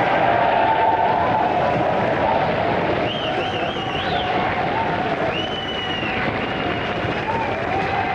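Studio audience applauding and cheering.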